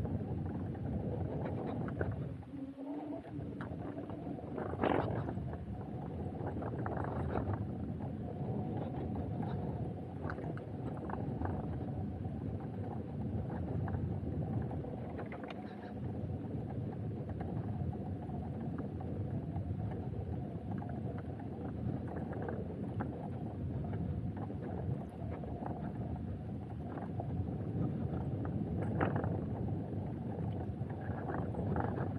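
Off-road vehicle engine running steadily while driving along a sandy forest track, with wind rushing over the microphone; it eases briefly about three seconds in.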